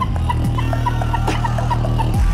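Two beatboxers performing a routine together through microphones: a held, deep buzzing bass line under kick drum sounds that drop in pitch, roughly one every 0.8 s, with sharp hi-hat-like clicks and small rhythmic vocal blips on top.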